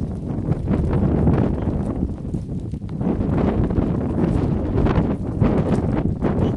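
Wind buffeting the microphone, with a large herd of goats browsing through dry brush around it.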